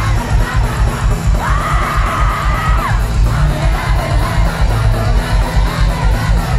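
Live pop band played loud through a concert PA and heard from inside the crowd, with a heavy pulsing bass beat and crowd cheering and yelling over it. About a second and a half in, a long high note rises into place and is held for about a second and a half.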